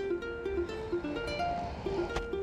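Background music: a light plucked-string melody of short notes stepping up and down several times a second.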